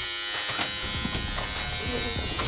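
Electric hair clippers running with a steady buzz, held in the hand rather than cutting hair.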